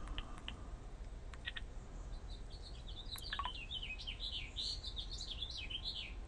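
A small bird singing a rapid warbling song of quickly varied high notes from about two seconds in, after a few short ticks in the first second and a half.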